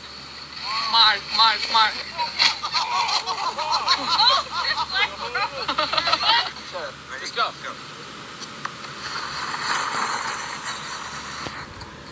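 Several people shouting and calling out in high, excited voices during a sledding run, followed by a stretch of steady rushing hiss near the end.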